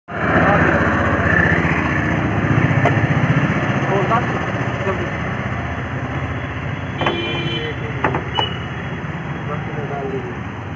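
Street traffic noise: a motor vehicle engine, like a motorcycle, running close by with a low pulsing sound, loudest in the first few seconds and easing after. Voices chatter in the background.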